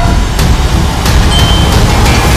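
Trailer sound design: a loud, deep rumble with several sharp hits over it.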